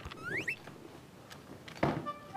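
A short rising squeak about half a second in, then a single sharp knock near the end as a hard-shell guitar case is set down against a wooden wall.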